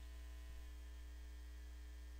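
Faint, steady low electrical hum, mains hum in the recording, with nothing else happening.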